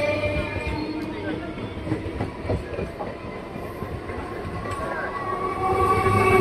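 Electric multiple-unit local train coaches rolling past, wheels knocking and clacking over the rail joints with a steady rumble. A motor whine fades early on and comes back near the end.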